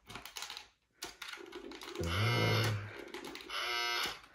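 Light plastic clicks of the tool against a battery-powered, dog-shaped skill game, then a steady electronic buzz about two seconds in that lasts about a second, with a weaker tone near the end: the game's error buzzer, set off when the tool touches the edge.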